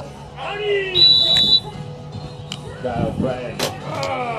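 A referee's whistle blows once, a high steady blast lasting about half a second, about a second in. Voices and a single sharp knock follow in the last second.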